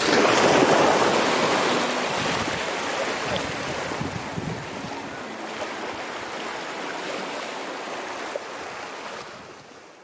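Small waves washing in at the water's edge: a swell of surf about a second in, then a steady wash that slowly falls away and fades out near the end.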